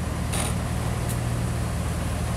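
Jeep Wrangler engine running low and steady as the Jeep crawls slowly over rock, with a short rasp about half a second in and a faint click a little after a second.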